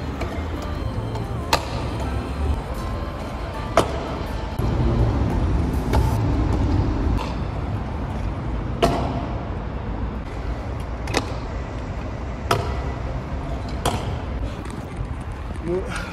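Freestyle scooter riding in a concrete skatepark bowl: a low rumble of small hard wheels rolling on concrete, broken by several sharp clacks as the wheels and deck hit the surface and coping.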